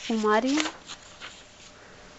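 A woman's voice briefly, then light rustling of paper sheets as a page in a stack of drawings is turned.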